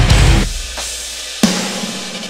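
Metalcore band playing: a heavy, low full-band hit with drums stops about half a second in, then a single sharp drum-and-cymbal accent about a second and a half in rings out and fades.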